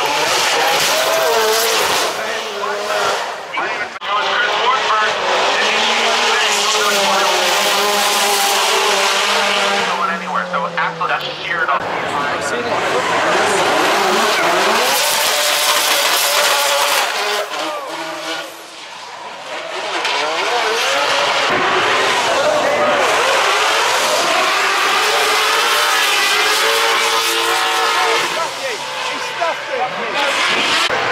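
Drift cars sliding sideways under power: engines revving hard with rising and falling pitch, over the squeal of spinning, smoking tyres. The noise eases off briefly about two-thirds of the way through, then picks up again.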